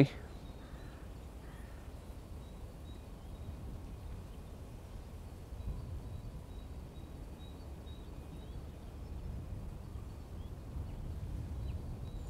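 Quiet outdoor ambience: a steady low rumble with faint, short, high bird chirps scattered throughout.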